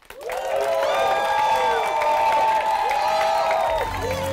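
Audience applauding and cheering, with many voices whooping over the clapping; it starts suddenly and runs strong throughout. Music with a steady bass line comes in near the end.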